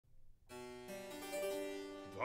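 Harpsichord continuo spreading the opening chord of a Baroque recitative, its notes coming in one after another about half a second in and then ringing on, played quietly.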